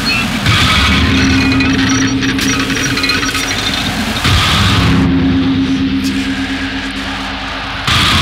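Harsh noise music: a loud, dense wall of distorted noise over a steady low drone, changing texture abruptly about half a second in and again just past four seconds.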